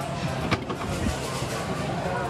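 Claw machine working among other machines, over steady background music and hum, with a sharp knock about half a second in and a smaller one about a second in.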